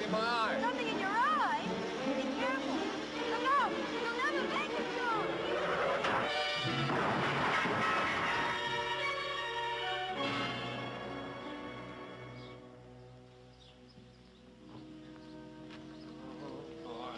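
Film soundtrack of a car crash: high wavering tyre squeals in the first few seconds, then a crash about six seconds in, under swelling orchestral music that fades away after about twelve seconds.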